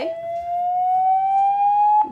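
A Redmi phone's loudspeaker playing MIUI's Clear speaker cleaning tone: one loud tone that glides slowly upward in pitch, drops back and begins a new rise right at the start. The tone plays for 30 seconds to shake dust out of the speaker.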